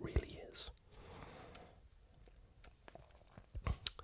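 Soft close-up whispered speech in the first second, then quiet hiss, with a few small sharp clicks near the end.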